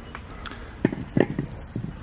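A few soft footsteps on a hard shop floor, over a low steady background hum.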